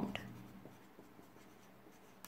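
Felt-tip marker writing on paper: a few faint, short scratching strokes as letters are written.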